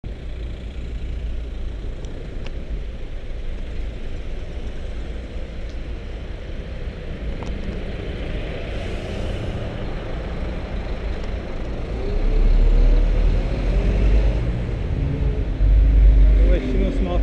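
Wind and road rumble on a bicycle-mounted camera's microphone while riding alongside city traffic. About twelve seconds in the rumble grows louder, with a nearby vehicle engine's tone rising and falling.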